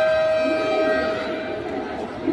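Arena buzzer horn sounding one long, steady tone at the end of the match, cutting off shortly before the end, over crowd chatter.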